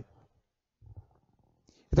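Pause in a man's speech: near silence with one brief, faint low rumble about a second in, then his voice resumes at the very end.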